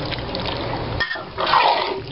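A spoon stirring and lifting wet macaroni goulash in a large pan, making a sloshing, squelching sound, with a louder scoop a little past halfway.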